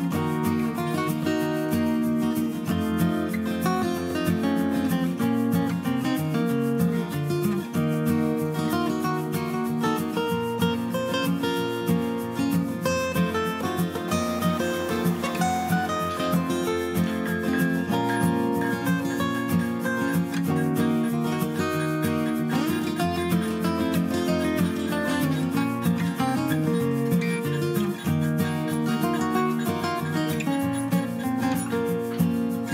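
Background music: acoustic guitar, strummed and plucked, at a steady level.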